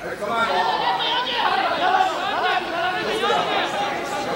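Crowd of spectators in a large hall, many voices calling out and talking over one another at once.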